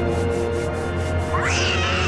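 Cartoon background music with sustained notes. About one and a half seconds in, a cartoon cat's voice gives a short cry that sweeps up in pitch and then falls back.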